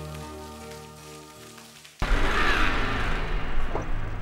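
Soft background music with sustained notes, fading out, then an abrupt cut about halfway through to loud outdoor noise of a car driving along a dirt road, with a steady low engine rumble.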